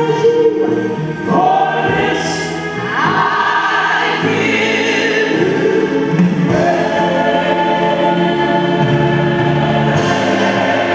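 Gospel choir song, the choir holding long sung chords that change every second or two over the accompaniment.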